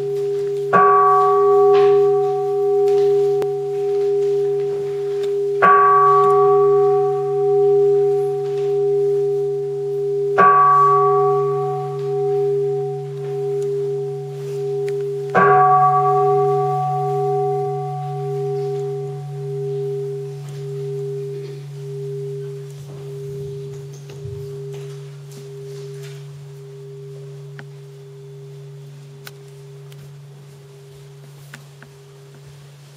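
A large brass bowl bell (jwajong) struck four times, about five seconds apart. Each strike leaves a long, slowly wobbling ring that dies away gradually after the last strike.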